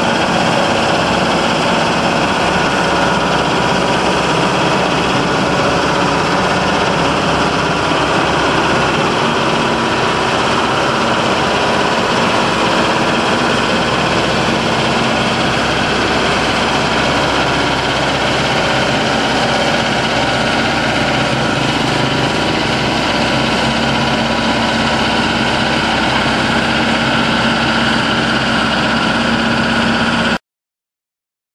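Diesel engine of a Sakai single-drum vibratory road roller running steadily while it compacts a stabilized soil road base.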